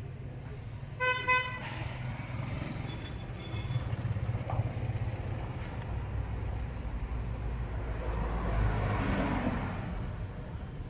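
A vehicle horn gives one short toot about a second in, over a steady low rumble of road traffic. A vehicle grows louder and passes near the end.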